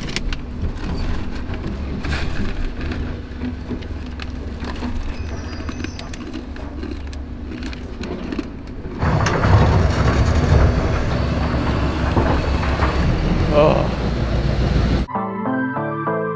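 Clicks and handling noises over a low steady hum, growing louder and noisier from about nine seconds in. Background music with a steady pattern of notes takes over about a second before the end.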